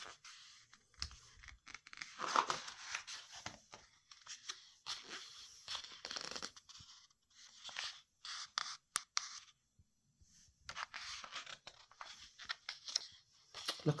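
Pages of a large hardback photo book being turned and smoothed flat by hand: irregular paper rustles, swishes and soft scrapes with small clicks.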